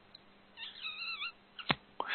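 A brief, quiet, wavering high-pitched call lasting under a second, followed by a single sharp click.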